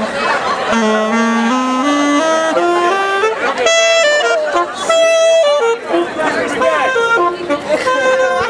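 Saxophone playing a slow melody of held notes, climbing step by step and then holding two long notes, over the talk and noise of a watching crowd of students.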